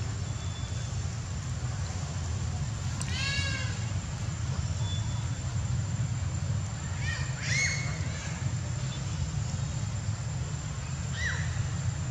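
Long-tailed macaques giving short, high-pitched calls over a steady low rumble: one about three seconds in, two close together around seven seconds, and a brief one near the end.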